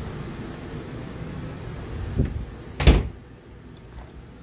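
Wooden cabinet door being shut: two knocks under a second apart, the second louder and sharper. A steady low hum underneath drops off after the second knock.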